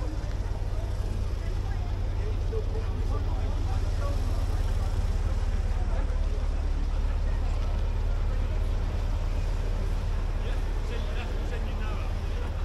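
Faint voices of people talking over a steady low rumble.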